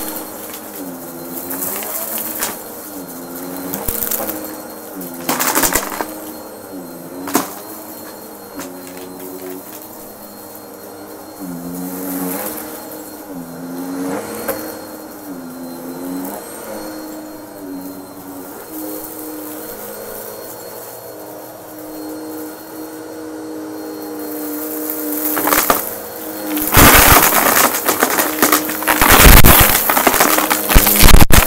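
Upright vacuum cleaner running, its motor pitch wavering up and down about once a second as it is pushed back and forth. Crunchy crackling of debris being sucked up comes in a few sharp bursts early on and turns into loud, dense crackle over the last few seconds.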